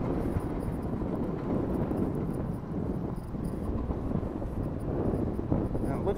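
Wind buffeting the microphone outdoors, a steady low rumble with no clear tone.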